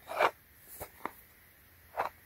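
Plastic shrink-wrap on a small cardboard box crinkling as the box is turned in the hand: one loud rustle just after the start, two shorter crackles around the middle, and another near the end.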